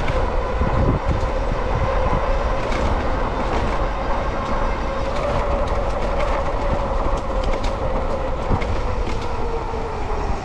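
An electric bike's hub motor whines steadily under power at around 20 mph, with low wind rumble on the microphone and scattered short clicks from the ride over the sidewalk. The whine dips in pitch near the end as the bike slows.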